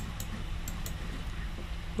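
A few light clicks of a Logitech wireless computer mouse, over a steady low hum.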